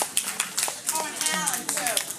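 Scattered clapping from a small audience, with sharp, irregular claps, and voices talking over it.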